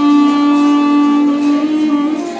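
Tenor saxophone holding one long note, released near the end as the next notes begin.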